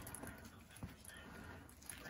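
Faint rustling of a felt bag-organizer insert being handled, with one soft tap a little under a second in.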